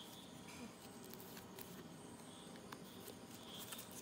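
Faint rustling and crinkling of a folded paper sticker sheet being handled and unfolded, with a few small clicks.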